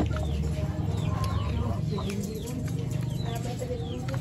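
Birds calling in the background: short falling chirps repeated again and again, over a steady low background noise, with a click right at the start.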